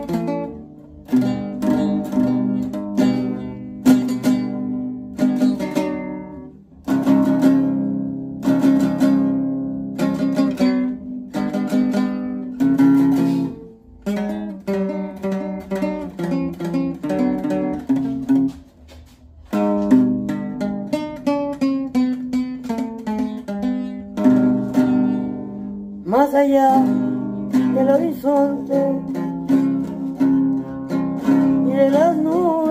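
Acoustic guitar strummed in steady chords, an instrumental introduction to a Spanish-language worship song, with a few brief pauses between phrases.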